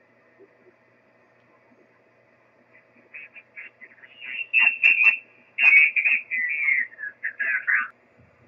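Amateur radio transceiver receiving on the 6-meter single-sideband portion as the dial is turned. It is nearly quiet at first, then about three seconds in a distant station's voice comes in, thin and garbled and sliding in pitch as it is tuned into.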